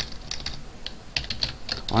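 Typing on a computer keyboard: a run of irregular keystroke clicks.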